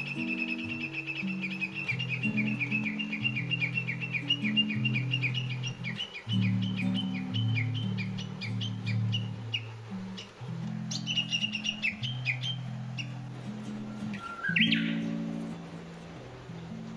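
Recorded songbird chirping in a rapid run of repeated notes, with a higher burst of chirps later and a short rising call near the end. It is mixed over soft instrumental music of low sustained notes.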